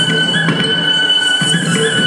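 Live Carnatic music ensemble: a high melody note held steadily with small ornamental slides, over a lower pitched line and regular mridangam strokes.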